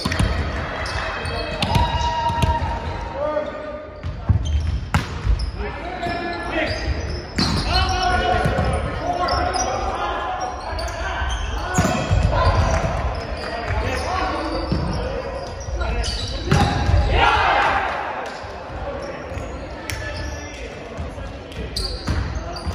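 Indoor volleyball play: players' voices calling and shouting throughout, over sharp slaps of the ball being struck and echoing thuds. The sound rings in a large gymnasium.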